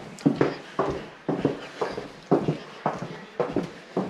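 Footsteps on a hardwood floor, walking at an even pace of about two steps a second.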